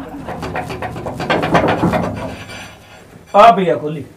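Men's voices, ending with a short loud spoken exclamation a little over three seconds in.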